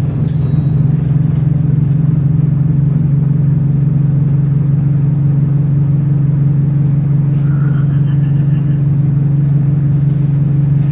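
Bus engine and drivetrain droning steadily inside the passenger saloon as the bus travels, a constant low hum with no change in pitch.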